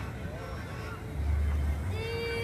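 Indistinct voices of people walking nearby, over a steady low rumble that grows louder for about half a second near the end.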